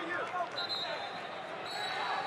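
Wrestling shoes squeaking on the vinyl mat as two wrestlers scramble: several short squeaks that rise and fall in pitch in the first half second, then a steady arena din.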